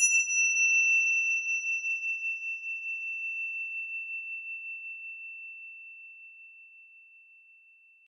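A small bell struck once, giving a clear, high ring that fades out slowly over about eight seconds with a slight waver.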